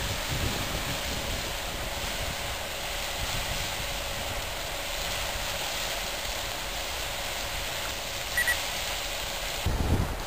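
Riverside Geyser erupting: a steady rushing hiss of its water column and steam.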